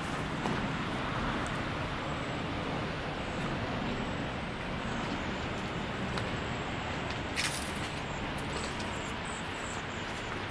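Steady background rumble of engines with a faint low hum, and a single sharp click about seven and a half seconds in.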